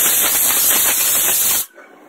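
Stovetop pressure cooker whistling: its weight valve vents steam under pressure in a loud, steady hiss that cuts off suddenly near the end as the weight reseats.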